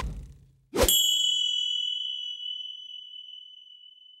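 Logo-sting sound effects: a hit right at the start, then about a second in a sharp impact that rings on as a high metallic ding, fading slowly.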